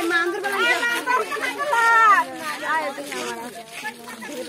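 Several women's and children's voices talking and calling out over one another, with one voice rising loudest about two seconds in.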